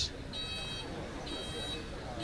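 An electronic alarm beeping steadily: high, even-pitched beeps about half a second long, about one a second, over steady low street noise.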